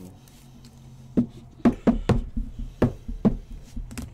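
A run of about eight sharp knocks on a tabletop, starting about a second in, as a stack of trading cards is handled on a padded mat.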